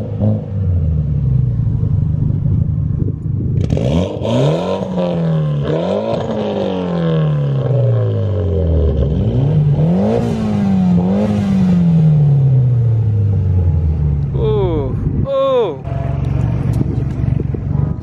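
Mitsubishi Lancer Evolution X's turbocharged 2.0-litre four-cylinder on an aftermarket titanium exhaust, idling and then revved repeatedly. The pitch jumps up in quick blips and sinks slowly back to idle each time.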